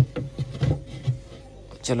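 A plywood shelf board being slid into a cabinet onto wooden supports: wood rubbing and a few light bumps as it settles into place.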